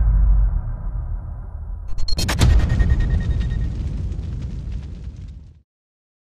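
Cinematic logo-sting sound effects: a deep rumble dying away, then a sharp explosive hit about two seconds in, followed by a crackling tail that fades and cuts off just before the end.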